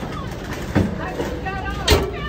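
Indistinct chatter of nearby people over a steady low rumble, with two sharp knocks, one about three-quarters of a second in and a louder one near the end.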